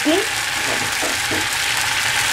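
Crushed garlic frying in a pan, with a steady sizzle of bubbling fat.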